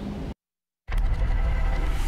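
A brief dropout to dead silence, then a steady low rumble from a news-graphic transition sound effect.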